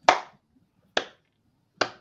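Three slow hand claps, about a second apart.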